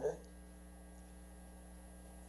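Steady low electrical mains hum with faint room noise, left after the end of a spoken word fades out at the very start.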